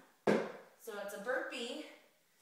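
A sharp thump a quarter of a second in, from a burpee done while holding dumbbells on the floor, followed by a woman's voice.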